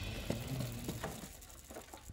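Intro theme music fading out, with a handful of faint, irregular clicks as a cardboard box rolls over the metal rollers of a roller conveyor.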